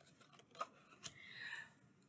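Faint handling of tarot cards: a couple of soft clicks and a short sliding rustle as cards are drawn off the deck and laid down on the table.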